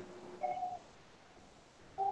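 Near silence, broken by one faint short tone about half a second in.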